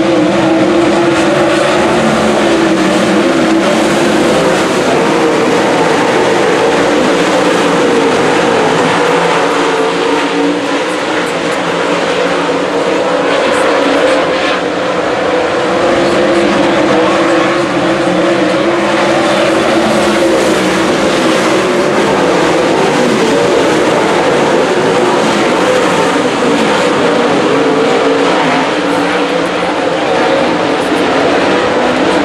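Dirt late model race cars running together around the oval, their V8 engines loud and continuous. The pitch rises and falls as cars accelerate and pass.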